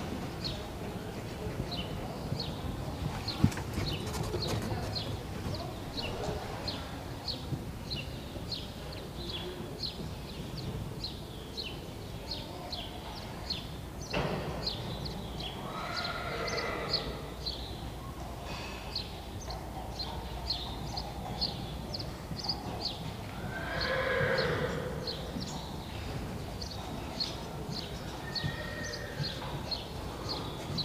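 Friesian horse trotting in harness with a four-wheeled driving carriage on arena sand: a steady rhythmic ticking of hooves and harness, about two beats a second. Twice, around the middle, a horse whinnies.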